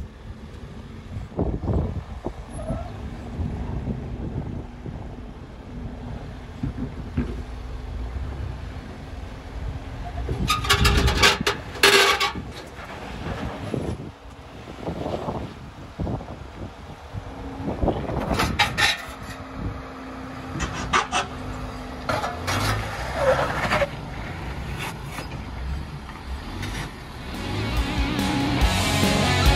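A 2021 Ford Bronco's engine running slowly under load as it crawls over granite boulders, with a low steady rumble. Clusters of louder knocks and scrapes from the truck working over the rock come about a third of the way in and again about two thirds in.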